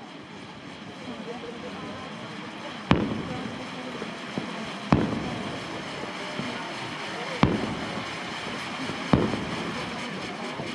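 Fireworks: four loud bangs about two seconds apart over the steady hiss of a ground fountain of sparks.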